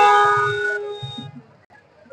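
A long vehicle horn blast, several steady tones sounding together, dying away about a second in.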